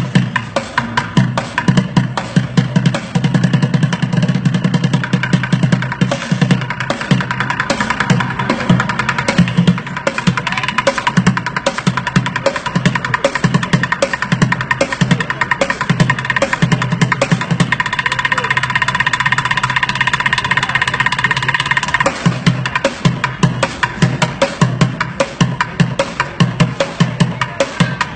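Street bucket drumming: drumsticks beating a fast, dense rhythm on upturned white plastic buckets. For a few seconds past the middle the low bucket hits drop out and a steady high ringing takes over, then the low hits return.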